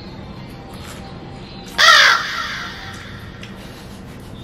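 A single harsh crow-caw sound effect about two seconds in, fading off quickly, over a faint steady background music bed.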